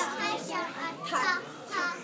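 Young children's high voices in a few short phrases, between lines of a children's song.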